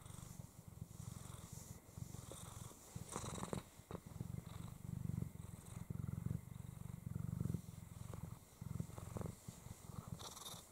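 Snow lynx Bengal mother cat purring steadily while her belly is stroked, the purr swelling and easing with each breath.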